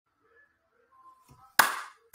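One sharp hand clap about one and a half seconds in, after near silence with a few faint soft sounds.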